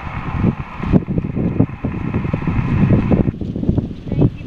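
Wind buffeting the microphone over the hiss of an HF amateur radio transceiver's receiver on the 15-metre band, waiting for the other station to reply. The radio hiss cuts off suddenly about three seconds in.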